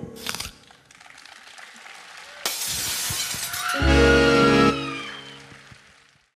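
Instrumental ending of a live pop song. A short hit comes at the start, a sudden crash about two and a half seconds in, then a final full chord that stops sharply and rings away.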